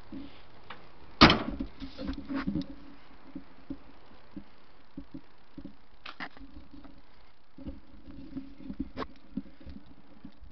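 A single sharp knock about a second in, then a second of rustling and smaller knocks, and a few scattered light clicks later on.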